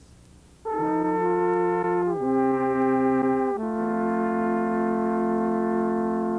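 Three wooden alphorns playing together in harmony. After a short silence they sound a chord about a second in, then move through two more long held chords.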